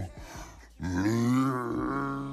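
A low male voice from a hip-hop track holding one long drawn-out vocal note that starts about a second in, rises a little and then falls away as it fades.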